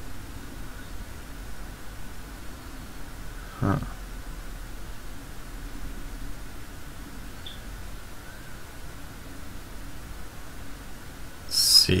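A quiet, steady low drone with a faint higher tone over it, the soundtrack of an online news explainer clip playing on a computer. A short, loud rushing burst comes just before the end.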